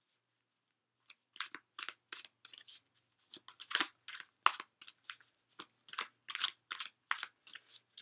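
A deck of tarot or oracle cards being shuffled by hand: a quick, irregular series of short papery slaps and swishes, about two or three a second, starting about a second in.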